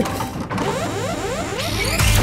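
Cartoon sound effect of a computer robot powering up into hostile mode: a mechanical ratcheting whir made of quick rising electronic sweeps, about five a second, with a low rumble swelling in near the end.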